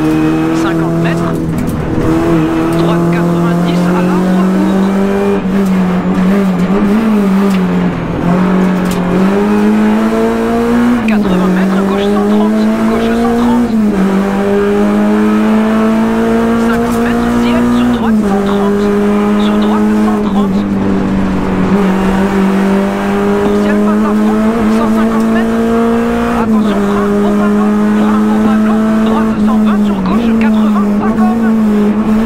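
Renault Clio RS rally car's four-cylinder engine at high revs, heard from inside the cabin. Its pitch climbs steadily and then drops sharply at each gear change, every few seconds.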